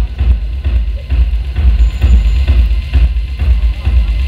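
Electronic music with a heavy, steady bass beat.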